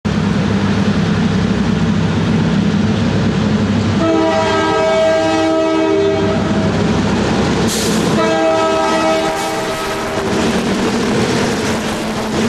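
Back-to-back EMD MP15AC diesel locomotives running past at close range. Their horn sounds two chords, a long one starting about four seconds in and a shorter one about eight seconds in. Near the end the ore jenny hopper cars roll by with a clatter of wheels on rail.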